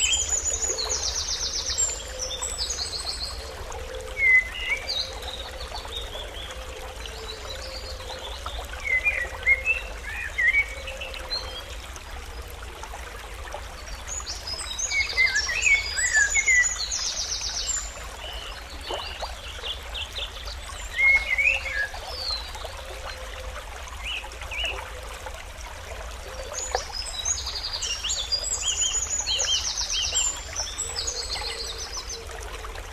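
Small birds chirping and trilling over a steady hiss, with the same run of calls coming round again about every 14 seconds.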